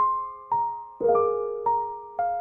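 Solo piano playing a slow, soft melody. Single notes are struck about twice a second, each ringing and fading before the next, with a lower note added about a second in.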